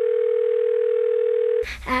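Telephone ringback tone heard down the line: one steady tone lasting about two seconds that cuts off as the call is answered.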